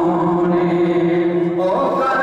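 A man singing a naat, an Urdu devotional poem, into a microphone. He holds one long note, then slides up to a higher note near the end.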